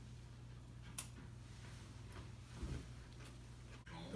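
Quiet room with a steady low hum and a single sharp click about a second in.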